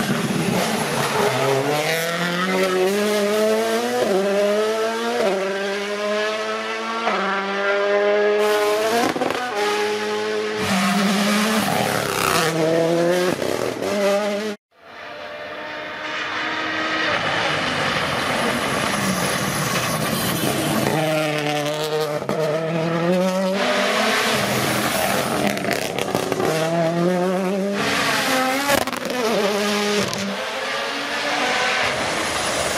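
Toyota Yaris GR Rally1's 1.6-litre turbocharged four-cylinder engine driven hard, revs climbing again and again and dropping at quick gear changes. The sound breaks off suddenly about halfway through, then another run follows.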